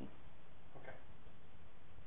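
Room tone: a steady, even background hiss in a pause between speakers, with a faint spoken "okay" just under a second in.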